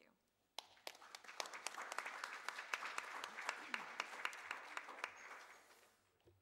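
Audience applauding, beginning about half a second in and fading out near the end.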